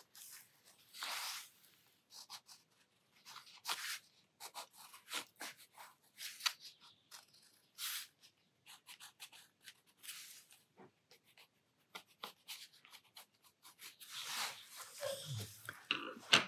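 Derwent Inktense watercolor pencil scratching faintly across mixed-media sketchbook paper in many short doodling strokes, with a longer rustle near the end.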